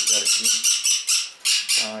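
A flock of Pyrrhura conures screeching, a fast run of short, shrill calls about five a second, pausing briefly just before the end.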